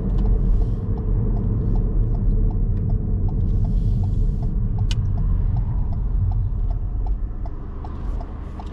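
Car's left turn indicator ticking evenly, about two or three clicks a second, over the low engine and road rumble inside the cabin as the car pulls in to stop. The rumble eases near the end as the car slows, and one sharper click comes about five seconds in.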